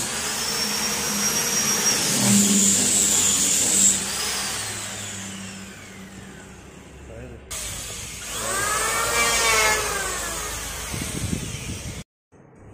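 Electric orbital sander running on a kamper-wood door panel, with a steady high whine, switched off about four seconds in, its pitch falling as it spins down.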